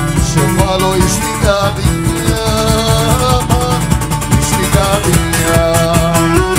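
Cretan traditional band playing live dance music: plucked lutes (laouto) and mandolin with the lyra and percussion, keeping a steady dance beat.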